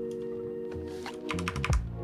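A quick run of computer keyboard clicks in the second half, ending in a heavier key thump, over background music with long held notes.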